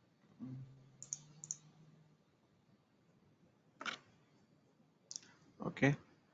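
A few short, sharp computer mouse clicks, about four, spread over several seconds, with a brief low hum near the start.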